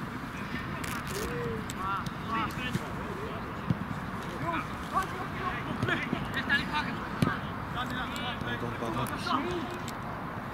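Short shouts and calls from football players across an open pitch, over steady outdoor background noise, with a few sharp knocks of the ball being kicked.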